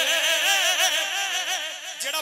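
Man singing a naat without instruments, holding one long ornamented note whose pitch wavers up and down in quick turns.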